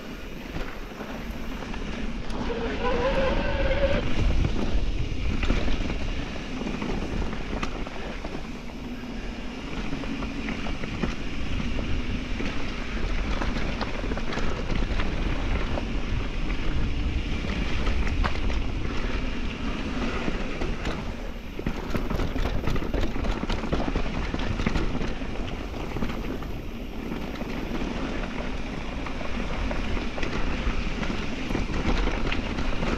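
Mountain bike rolling fast over dirt singletrack: steady wind buffeting the microphone and tyre roar, with the bike's frame and chain rattling. A brief wavering squeal about three seconds in, and a burst of clattering over rocks a little past twenty seconds.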